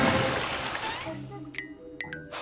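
Cartoon water sound effect: a splashing rush of water that fades over the first second and a half, then two short plinks like drips near the end, over soft background music.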